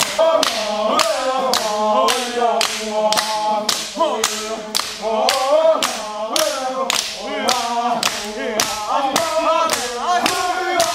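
A group of dancers chanting in unison over steady hand clapping, about three claps a second, in a Vanuatu traditional dance.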